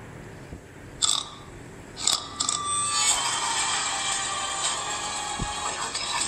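Horror-film trailer soundtrack of music and sound effects: quiet at first, a sudden hit about a second in and another about two seconds in, then a dense, sustained swell from about three seconds on.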